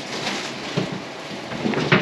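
Food frying in hot oil, a steady crackling sizzle, with a sharp knock near the end.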